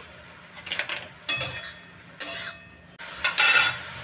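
Spatula scraping and stirring cabbage and potato pieces in an aluminium kadhai, in about four strokes, the longest near the end, with the vegetables sizzling quietly between them.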